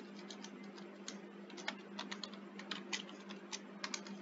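Computer keyboard keystrokes, faint, irregular single clicks as a line of code is typed, over a steady low hum.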